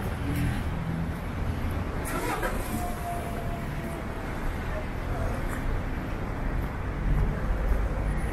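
City street traffic: motor vehicles passing and engines running on a wet road, a steady low rumble.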